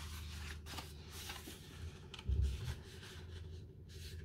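Black cardstock rustling and flexing as it is handled and bent to fold it in half for a card base, with a few light clicks and a soft thump a little past halfway.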